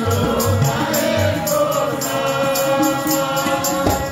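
Sikh kirtan: a hymn sung by several voices over a steady harmonium drone, with tabla keeping a fast, even beat and deep bass-drum strokes.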